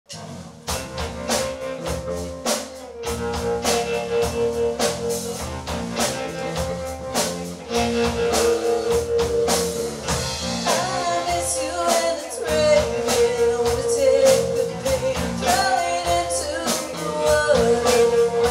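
Live rock band playing: drum kit keeping a steady beat under electric guitars and bass, with a woman singing lead. The band comes in just under a second in.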